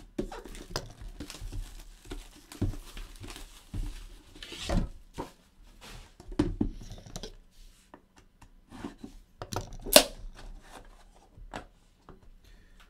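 Sealed trading-card boxes and their plastic wrapping being handled and opened: irregular rustling, tearing and cardboard scraping with light clicks, and one sharp knock near the end.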